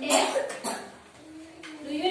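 A cough, two short sharp bursts near the start, among young children's voices.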